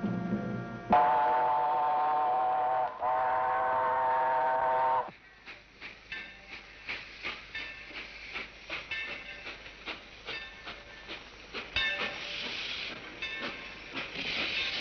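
Steam train whistle blowing two long, loud blasts with a short break between them, then the quieter rattling and clanking of the train running.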